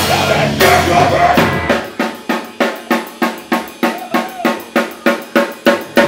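Live rock band playing loudly on a drum kit with guitars and bass. About two seconds in, the bass and guitars drop out and the drum kit carries on alone in a steady pattern of hits, about four a second.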